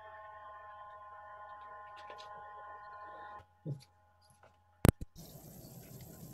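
A steady tone holding several pitches at once for about three and a half seconds, cutting off suddenly. A sharp click follows, then about a second and a half of hiss with a faint high whine.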